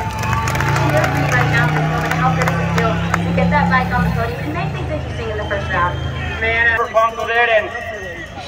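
A flat-track racing motorcycle's engine running steadily at low revs, ending about seven seconds in, over crowd noise and voices.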